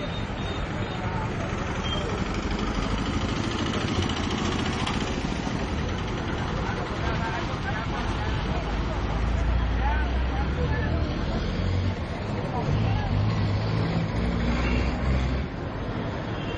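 Road traffic at a busy junction: engines of passing vehicles such as an auto-rickshaw and trucks, with a deeper engine rumble swelling in the second half, over a background of voices.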